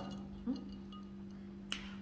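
Quiet room with a steady low hum, a soft short sound about half a second in, and a single sharp click near the end.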